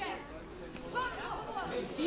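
Speech only: quiet voices during a short pause in a man's speech, with a brief burst of talking about a second in.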